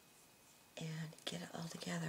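A woman's soft voice, speaking or murmuring, starting a little under a second in; the words are not made out.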